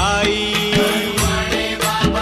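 Marathi devotional song (bhajan) to Sai Baba: a long held melodic note over a steady drum beat.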